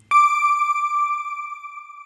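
A single electronic chime sounding once and ringing out as a clear high tone that slowly fades: the news outro sting played with the closing logo card.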